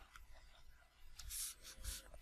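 Faint stylus strokes on a tablet screen as handwriting is added: a few short taps and scratches, with a slightly longer scratch about a second and a half in.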